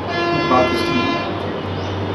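A horn sounds once, a steady pitched tone lasting about a second.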